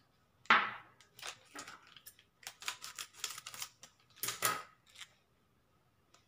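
Face-pack powder and rose water being stirred into a paste in a small glass bowl: an irregular run of short scraping strokes against the glass, lasting a few seconds.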